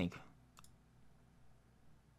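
A single computer mouse click about half a second in, pressing play, followed by faint room tone with a low hum.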